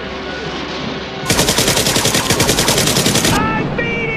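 Sound-effect machine-gun fire: one rapid burst about two seconds long, starting a little over a second in, loud over a steady rushing noise.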